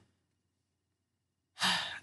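Near silence, then about a second and a half in a single audible breath from a young man, a sigh, that starts suddenly and fades as he is about to speak.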